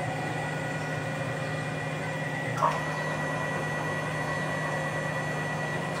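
Stepper motors of a home-built CNC router driving its ball-screw axes, giving a steady hum and whine made of several held tones as the gantry traverses. A brief falling chirp about two and a half seconds in.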